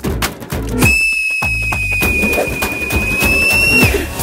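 A high, steady whistle held for about three seconds, starting just under a second in and dipping in pitch as it cuts off, over background music with percussion.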